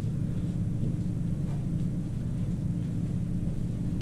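A steady low-pitched hum of background noise, unchanging throughout.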